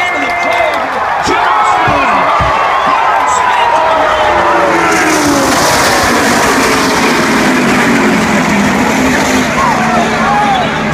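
A pack of NASCAR Cup stock cars' V8 engines passes at full racing speed, each engine's pitch dropping as it goes by. From about halfway through, a broad wash of noise builds as the field wrecks at the finish line, with tyres skidding.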